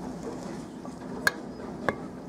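Spatula stirring sticky dough in a stainless-steel mixing bowl: a soft scraping with two sharp knocks of the spatula against the bowl in the second half.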